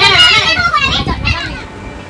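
Only speech: lively, high-pitched talking for the first second and a half, dropping away near the end.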